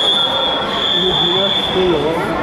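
Referee's whistle: one long, steady, high blast held for about two seconds, ending the action on the mat. Voices from the hall carry on underneath.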